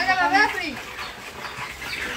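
A short, drawn-out wordless vocal sound from a person in the first second, falling in pitch at the end, then low background noise.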